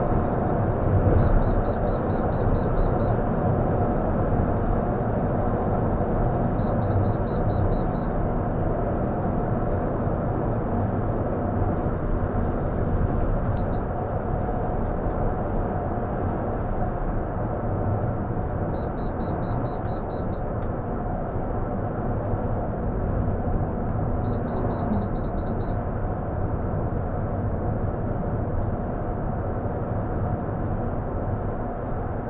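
Intercity coach driving at speed on the highway, heard from the driver's cab: a steady drone of engine and road noise. Several short bursts of rapid, high-pitched electronic beeps sound from the dashboard, about four or five beeps a second, recurring every few seconds.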